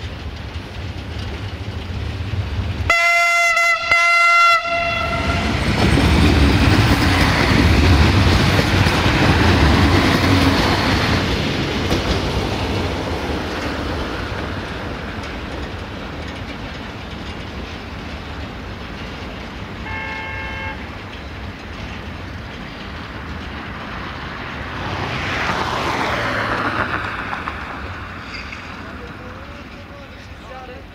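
Siemens Desiro VT642 diesel multiple unit sounding its horn in two short blasts, then running past with diesel engine and wheel noise that swells to its loudest a few seconds later and slowly fades as it moves away. A brief fainter horn-like tone follows later on.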